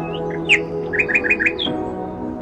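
Songbirds chirping: scattered high calls, then a quick run of four short notes about a second in, over a steady background music track.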